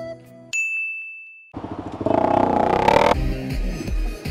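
Background music stops and a single high 'ding' sound effect cuts in sharply, ringing on one tone and fading over about a second. A loud rush of noise then rises, and from about three seconds in a motorcycle is heard running in traffic.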